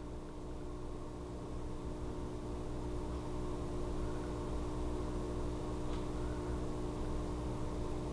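A steady mechanical hum: a low drone with a few held tones over it, growing slightly louder over the first few seconds.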